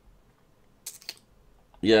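A short cluster of computer keyboard key clicks about a second in, against an otherwise quiet room.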